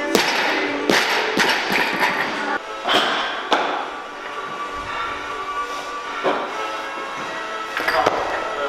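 A loaded barbell with rubber bumper plates dropped from overhead onto a lifting platform: a loud crash just after the start, then a few smaller bounces over the next two seconds and another knock about three and a half seconds in, over background music.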